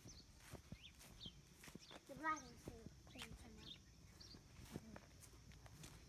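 Faint footsteps in grass and dry leaves among free-ranging chickens, with a few soft high chirps and one short call about two seconds in.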